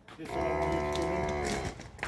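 A red-and-white cow mooing once: a single long, steady call lasting about a second and a half.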